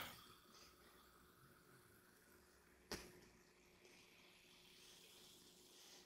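Very faint pouring and fizzing of cola from an aluminium can into a glass, with one short click about three seconds in.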